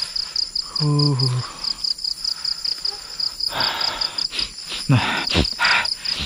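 Crickets chirping in a steady, rapid high-pitched pulse, about five pulses a second, with rustling in the second half and a brief spoken "nah" near the end.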